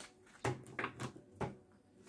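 A deck of oracle cards being shuffled by hand: a few short, soft card slaps and flicks about half a second apart.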